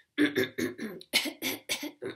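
A woman clearing her throat over and over, a quick run of short, harsh, rasping bursts, while her allergies leave her sniffy.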